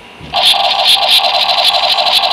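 Electronic toy gun firing sound: a loud, rapidly pulsing electronic tone that starts suddenly about a third of a second in.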